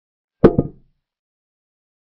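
Chess software's piece sound effect for a capture: a short wooden knock, doubled, about half a second in, as a queen takes a rook.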